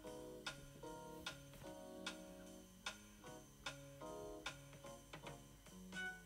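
Quiet background music of plucked guitar notes, several per second.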